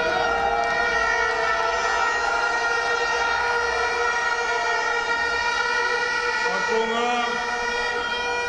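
A steady, unchanging pitched tone with many overtones, and a faint voice-like sound near the end.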